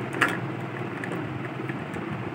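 A single light clack of plastic toy dishware being set down, about a quarter-second in, over a steady low hum.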